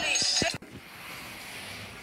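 Handheld camera and plush toy being moved, with rubbing noise, a short voice and two dull thumps in the first half second, then a click and faint steady hiss.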